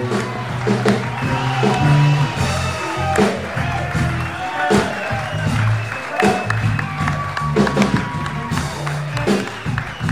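Live house band playing an instrumental walk-on tune, with a bass line and a steady drum beat about every three-quarters of a second.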